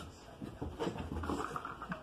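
A corgi's faint breathing and small vocal sounds as it runs across carpet.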